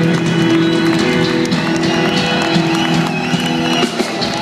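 Live rock band playing on stage, heard from within the audience, with steady held chords throughout.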